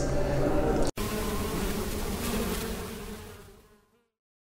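Bee-like buzzing sound effect that starts suddenly about a second in, after a brief dropout, and fades out over the next three seconds.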